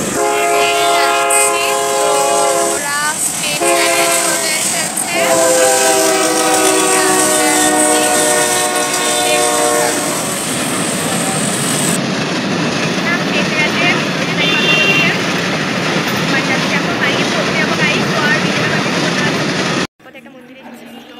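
A loud horn sounding in long held blasts for about the first ten seconds, with short breaks between them, followed by a steady rumbling noise with faint voices.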